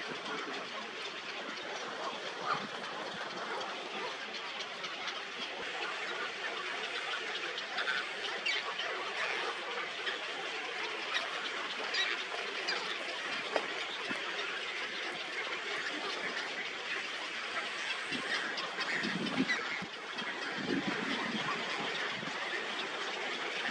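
A nesting colony of large waterbirds: many birds calling at once in a dense, steady din, with frequent short clicks throughout and a few lower honking calls near the end.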